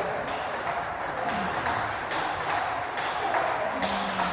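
Table tennis balls clicking against bats and tables in short, irregular knocks throughout.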